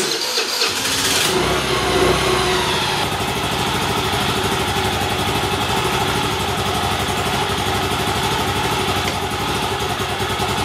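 Freshly rebuilt Kymco GY6 four-stroke single-cylinder scooter engine being cranked and catching within about a second, then running steadily at idle. It ran fine but would not idle or rev up: the carburetor's slide diaphragm was apparently ripped, so the slide could not lift.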